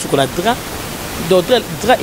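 Speech: a person talking, with a short pause in the middle, over a steady background hiss.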